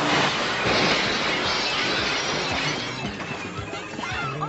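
A car crashing through a plate-glass shop front: glass shattering and falling in a dense crash that starts at once and fades out over about three seconds.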